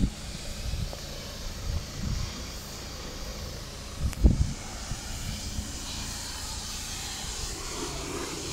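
Steady outdoor background hiss with irregular low rumbles and one louder thump a little after four seconds in.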